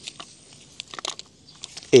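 Small plastic packaging bag handled and crinkled while drone accessories are taken out, giving scattered light clicks and crinkles.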